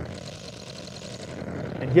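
Active studio monitor speakers putting out steady electrical noise, a hiss and fast buzz with a faint whine, that gets worse with the computer's GPU near full load: interference from the computer picked up through the unbalanced cabling from the audio interface.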